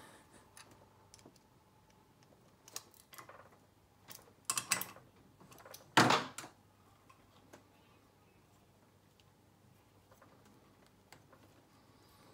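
Small clicks and knocks of an ignition coil and CD pack being handled and fitted onto an outboard powerhead, a few scattered clicks with one sharper knock about six seconds in.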